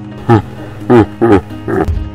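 Four loud, short creature cries, each falling in pitch, a cartoon sound effect over background music.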